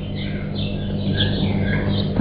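Birds chirping in short, scattered calls over a steady low hum.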